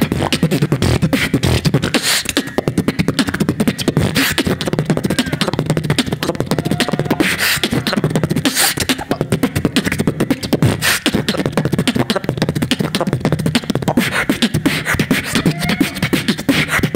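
Solo human beatboxing into a handheld microphone: a fast, dense stream of percussive mouth sounds over a steady low bass, with sharper, louder hits every few seconds. A short gliding note comes about seven seconds in and again near the end.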